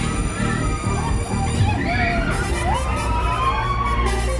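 Loud electronic dance music from a Break Dance fairground ride's sound system while the ride runs, with swooping, siren-like rising and falling sounds over the beat in the second half.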